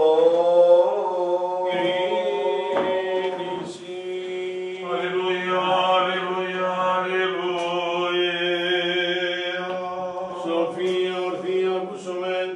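Greek Orthodox Byzantine chant sung by male chanters: long, slowly moving melodic lines over a steady held low note (the ison drone), with the reverberation of a small stone chapel.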